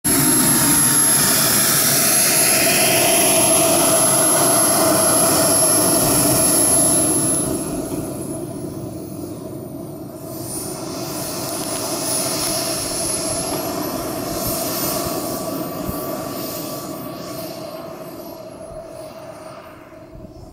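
Engine of a radio-controlled scale T-45 jet model running with a steady high whine, loud for the first several seconds and then fading as the model taxis away down the runway. The whine's pitch dips, rises and falls again as the throttle changes.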